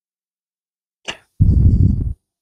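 A light tap about a second in, then a short, loud, low scraping rumble as a long aluminium angle ruler is slid across a cedar soundboard on a wooden bench.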